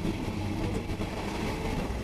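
Rovos Rail passenger train running along the track, heard from its open rear observation deck: a steady rumble of wheels on rails.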